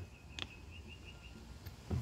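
Two faint clicks of a vend motor's metal gearbox and gears being handled, about a second and a half apart, with a faint, quick run of high chirps in the first second.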